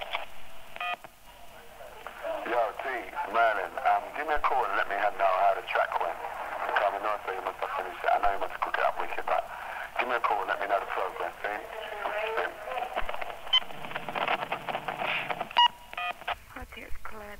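Speech heard over a telephone line, thin and narrow-sounding like a recorded answering-machine message, with a couple of short beeps near the end.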